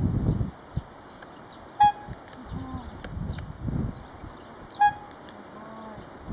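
Two short honks of a hand-held horn tooted by a horse's mouth, about three seconds apart. A low rumbling noise at the start stops about half a second in.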